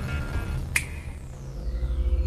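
Low, rumbling music underscore with one sharp electronic click about three-quarters of a second in, followed by a thin high tone that falls slowly: a sci-fi interface sound effect as a holographic display comes up.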